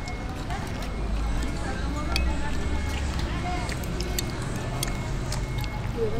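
Indistinct voices in the background over a steady low rumble, with scattered light clicks and taps.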